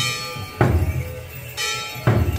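Traditional Khmer percussion music accompanying a masked dance: drum beats together with ringing metal percussion strikes, two strong strikes about a second apart, each left ringing.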